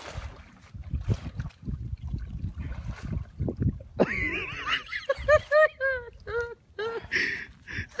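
Water splashing as a man wades and scrambles in a creek after falling in from a log. From about halfway through, loud laughter in quick repeated bursts.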